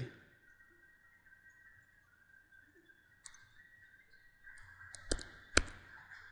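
Computer mouse clicks: a faint click about three seconds in, then a run of clicks near the end, the two loudest about half a second apart. A faint steady high whine sits underneath.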